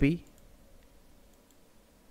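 The end of the spoken word "copy", then a quiet room with a few faint clicks.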